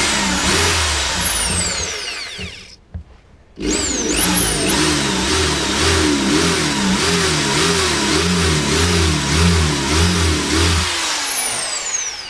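Electric drill with a masonry bit boring slowly into a pebble clamped in a drill vice. The motor runs in two goes, a short one, a brief stop about three seconds in, then a longer run with its pitch wavering under the trigger, spinning down near the end.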